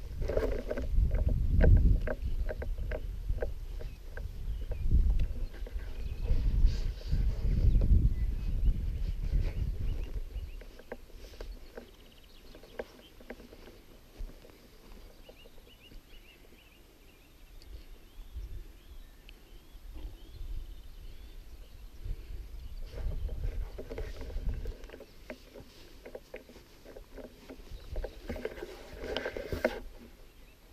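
A person walking through grass: heavy footfalls, rustling and handling noise close on the camera microphone. It is loud for about the first ten seconds, goes quiet while he stands still, then picks up again for the last several seconds.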